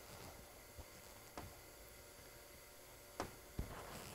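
Near silence: faint room tone with three soft clicks, one in the middle and two near the end.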